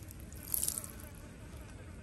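An otter urinating: a thin stream of urine splashing onto wet ground, with a short louder spurt about half a second in, then only faint dripping.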